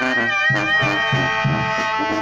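Mexican brass-and-woodwind band (banda) playing: a long held high note that wavers and bends, over steady sousaphone bass notes at about three a second.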